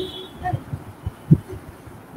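A few dull, low thumps, the loudest a little past halfway, with a brief faint vocal sound early on.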